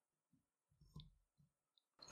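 Near silence, with a single faint click about a second in.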